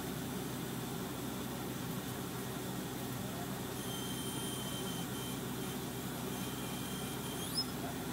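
Truck-mounted crane's engine running steadily. From about halfway through, a thin high squeal is held for about four seconds, then rises sharply and ends in a short click near the end.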